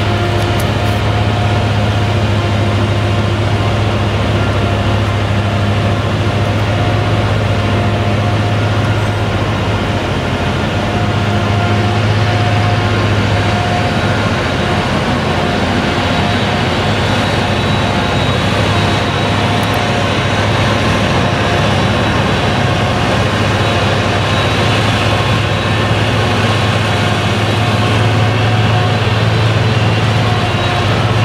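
Claas Jaguar self-propelled forage harvester chopping whole-crop triticale with its Direct Disc mower header, working alongside a tractor and forage trailer: a steady, loud engine drone with a constant high-pitched whine over it.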